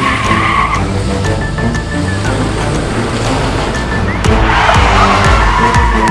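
Car tyres squealing on asphalt, briefly at the start and then in a longer, louder skid from about four seconds in as a Jeep Wrangler slides to a stop. Dramatic soundtrack music plays underneath.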